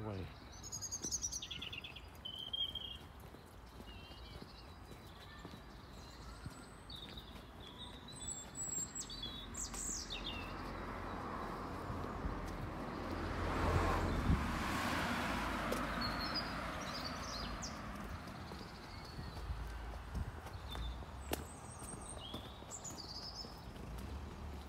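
Outdoor street ambience: small birds chirping and singing on and off, and a car passing on the road, growing louder to its loudest about halfway through and then fading away.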